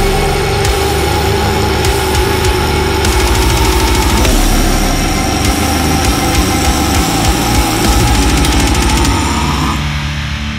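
Deathcore track with one long held harsh scream: the voice slides down just before and holds a single gritty note for nearly ten seconds, lifting slightly as it breaks off near the end. Fast, dense drumming runs underneath.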